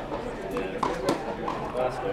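A tennis ball being hit and bouncing on an indoor hard court: a few sharp knocks, the loudest about a second in, with voices in the background.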